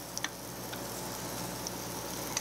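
Scallops searing in a stainless steel pan over medium-high heat, a steady sizzling hiss with a few faint ticks and pops from the fat.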